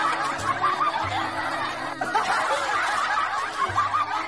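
Laughter, dense and continuous, several snickering and chuckling voices at once.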